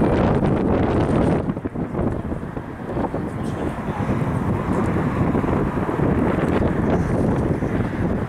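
Strong gusty wind buffeting the microphone: a rough low rumble that rises and falls, with a brief dip about one and a half seconds in.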